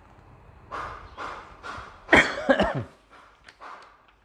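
A person coughing: a few short breathy huffs, then one loud cough with a falling voiced tail just after two seconds in.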